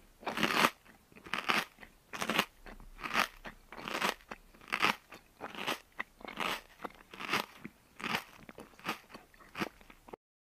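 A child chewing crunchy food close to the microphone: about a dozen crisp crunches, a little more than one a second.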